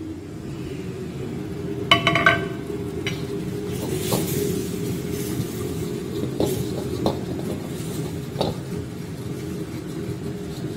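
Metal ladle stirring a bubbling milky butter-and-salted-egg-yolk sauce as it reduces in a steel wok, over a steady sizzle and low rumble. The ladle clinks against the wok several times, loudest about two seconds in.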